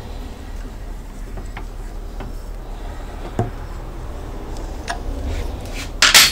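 A few faint, separate metallic clicks over a steady low hum as the nut on a homemade CVT belt-puller tool is tightened, drawing the transaxle's pulley sheave up to slacken the steel push belt.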